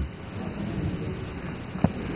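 Low rumbling movement and handling noise with one sharp knock near the end.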